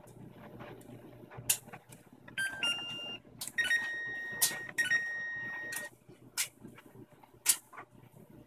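Brastemp washing machine control panel being set: button presses click, and the panel answers with electronic beeps, first a short run of tones changing pitch, then a long steady beep broken once briefly.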